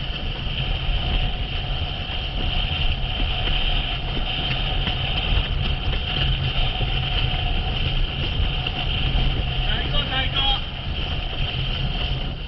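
Boat engine running steadily at speed, with water rushing past and wind noise over it.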